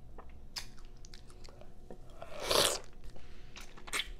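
Close-miked chewing and biting of juicy fresh pineapple: scattered short wet mouth clicks, with one louder bite lasting about half a second a little past halfway.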